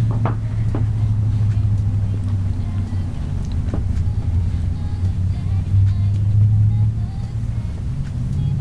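A steady low hum throughout, with faint music over it.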